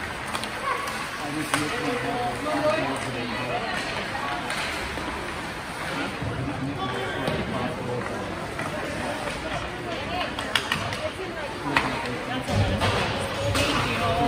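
Ice hockey rink ambience: spectators talking in the stands, with a few sharp clacks of sticks and puck during play.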